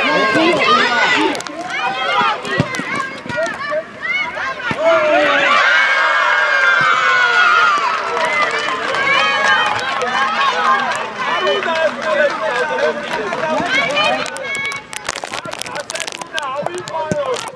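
Many high-pitched young voices shouting and cheering over one another at a youth football match, swelling into a long shared cheer about six seconds in as a goal goes in. A few sharp knocks near the end.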